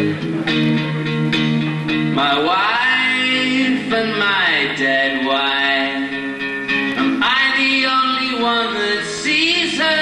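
Acoustic guitar strummed in steady chords while a man sings into a microphone, holding long notes that slide up and down in pitch.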